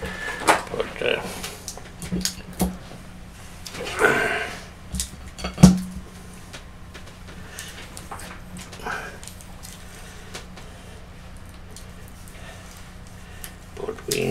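Scattered knocks and clatter of boxes of modelling clay being handled and set down on a desk, with the heaviest thump about five and a half seconds in; after that it is mostly quiet.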